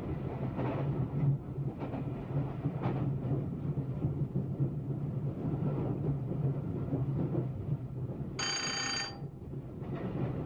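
Electric train running under power, heard from the driver's cab: a steady low hum over wheel-on-rail rumble, with a few faint knocks. About eight and a half seconds in, a bell-like ringing tone sounds for just under a second.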